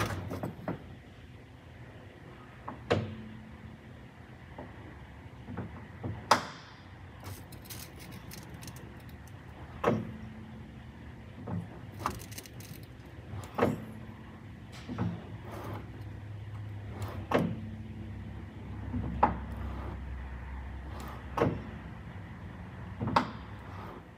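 Sharp clunks and clicks, about a dozen, one every one to three seconds, from an Austin-Healey Sprite's clutch pedal, linkage and hydraulic slave cylinder as the pedal is pressed and released. The long-unused slave cylinder piston sticks in the out position at first before freeing up.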